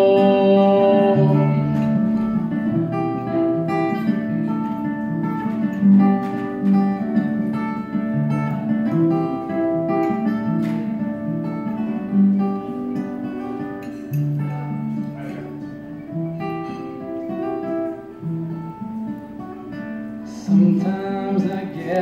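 Acoustic guitar playing an instrumental passage of separate picked notes, growing gradually quieter toward the end.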